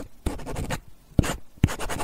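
Close scratching and rubbing with a few sharp, irregular knocks: handling noise on the recording phone's microphone as it is moved.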